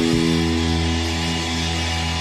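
Punk rock band with electric bass: the song's last chord is struck and left ringing, distorted guitars and the bass sustaining one held low note.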